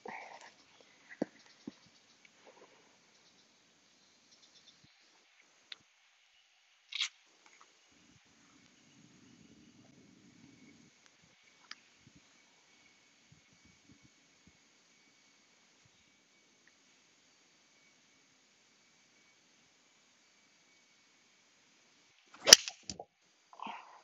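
An iron clubface striking a golf ball off the tee: one sharp, loud crack near the end, after a long quiet stretch. Under it runs a faint steady high-pitched background drone, with a few small clicks.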